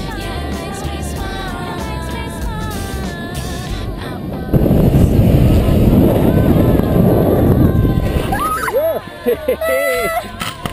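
Background music, cut off about four and a half seconds in by a loud rush of wind buffeting the camera microphone as a tandem parachute comes in to land on grass. Near the end come short excited shouts.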